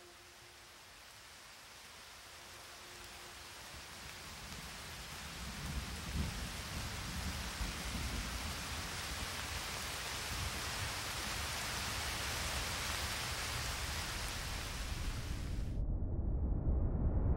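A rushing, rain-like hiss of water with a deep rumble beneath it, swelling slowly from faint to loud. The hiss cuts off suddenly just before the end, leaving only the low rumble.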